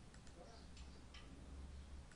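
Near silence: a faint low room hum with a few scattered faint clicks.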